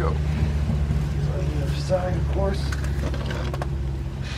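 A steady low machine hum, with faint muttering and a few light clicks about three seconds in.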